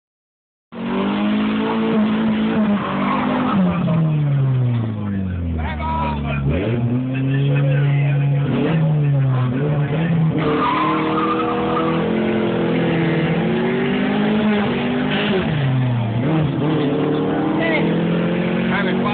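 A 1995 Neon's 2.0 L SOHC four-cylinder engine, heard from inside the cabin, running at changing revs, its pitch repeatedly rising and falling over a few seconds at a time.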